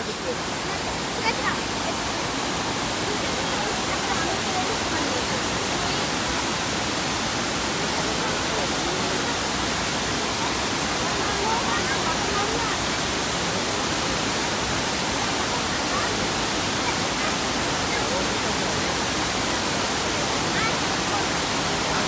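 Steady rushing of a wide, low curtain waterfall, the river pouring over a long rock ledge in one even wash of water noise.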